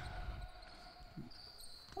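Faint sounds of a basketball on a hardwood gym court during a shot and rebound, with a few low thumps as the ball comes down.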